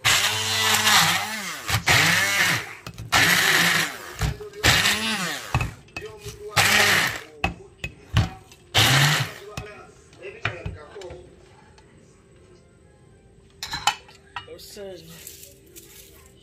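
Hand-held stick blender run in about six short pulses, mincing chopped red onion in a bowl. The motor pitch rises and falls with each pulse, and the blending stops after about nine seconds.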